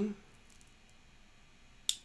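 Low room tone, then a single short sharp click near the end.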